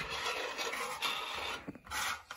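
Rubbing and scraping handling noise with a few light clicks as a small plastic toy basketball game is moved and set down on the floor.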